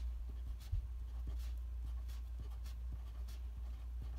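Pen writing on graph paper in short, separate strokes as numbers are marked one after another, with a soft knock about three quarters of a second in. A steady low hum runs underneath.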